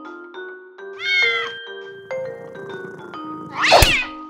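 A cat meowing over background music: one meow about a second in, then a louder, wider cat cry near the end.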